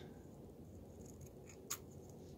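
A single short snip of scissors cutting through a strip of felt, about three-quarters of the way in, over faint room tone.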